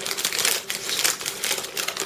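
Plastic bag of dry pinto beans crinkling and rattling as it is opened and handled, the beans shifting inside with many quick irregular clicks.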